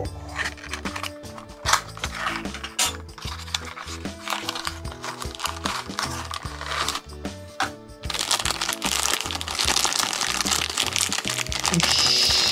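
A cardboard toy-car box flap being prised open with tweezers, with small clicks and scrapes. From about eight seconds in comes a loud, continuous crinkling of the thin clear plastic bag holding a die-cast Tomica car as it is pulled out. Background music plays throughout.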